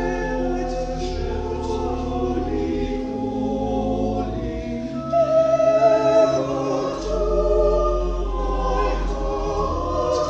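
A small choir singing a slow carol to organ accompaniment. The voices hold long notes over steady low organ tones and grow louder about halfway through.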